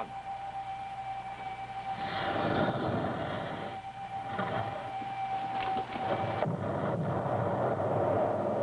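Sound effect of a launched missile rushing through space: a rushing roar swells up about two seconds in over a steady whining tone. The tone cuts off suddenly about six and a half seconds in, and a rumbling rush carries on after it.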